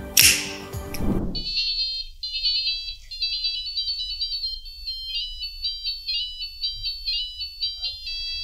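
A piezo buzzer on an electronics learning board playing a melody as a fast run of short, high electronic beeps. Background music cuts off about a second in, just before the melody starts.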